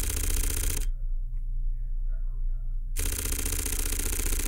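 Fujifilm X-H2 mechanical shutter firing a 15-frames-per-second burst: a run of rapid clicks that ends just under a second in, then a second run starting about three seconds in and lasting about a second and a half. The shutter is quiet for its class, a little louder than the X-H2S.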